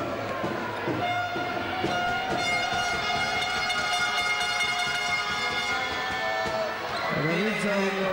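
A horn sounds one long, steady note for about four seconds while a basketball free throw is taken, over arena crowd noise.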